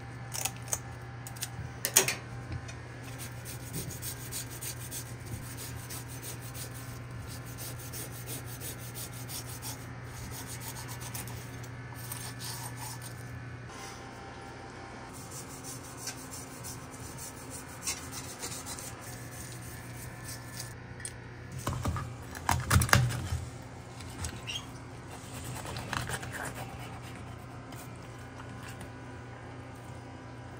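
Fish being prepared on a cutting board: a few sharp snips of kitchen scissors near the start, then a long stretch of a knife rasping and scraping along the skin of a white tilefish, taking off its scales. A cluster of heavy knocks on the board comes about two-thirds of the way through, over a steady low hum.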